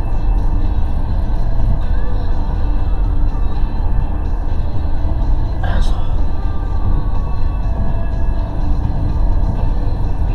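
Steady low rumble of engine and road noise inside a moving vehicle's cabin at road speed, with one brief sharper sound about six seconds in.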